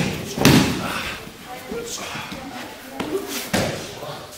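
Bodies and hands hitting the training mats in thuds as aikido partners are taken down to the floor by the nikkyo wrist lock. The loudest hit comes about half a second in, with more near the end, and voices echo in the hall.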